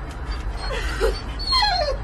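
A husky whining: a couple of short yips, then a longer whine that slides down in pitch near the end, over a steady low hum.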